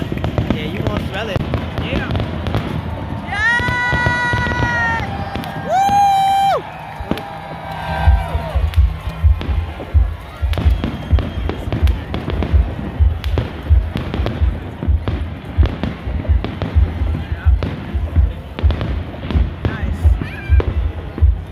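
Fireworks bursting and crackling, with two held high tones over them a few seconds in; from about eight seconds a steady thumping beat of roughly two pulses a second takes over.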